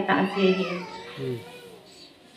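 A woman's voice through a microphone: a drawn-out syllable that bends up and down in pitch, then a short low falling sound a little past a second in, fading to quiet room tone near the end.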